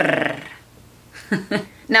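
A woman's voice holding a long rolled Spanish R, the tip of the tongue trilling rapidly against the roof of the mouth just behind the teeth; the trill stops about half a second in.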